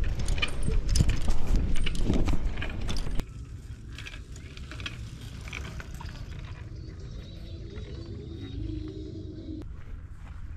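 Wind rumbling on the microphone and a bicycle rattling over a rough dirt road, with many sharp clicks. It cuts off suddenly about three seconds in to a much quieter outdoor background, with a faint low hum near the end.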